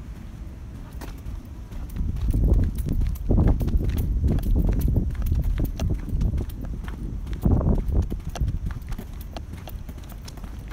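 Footsteps on concrete, irregular and scattered, with low irregular rumbling on the microphone that swells twice.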